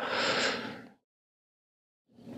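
A man's short breathy laugh, a single exhale through a smile lasting about a second.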